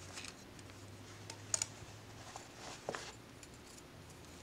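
Faint clicks and rustling as a wooden embroidery hoop's tension screw is loosened and the hoop is taken off denim fabric, with a sharp click about a second and a half in.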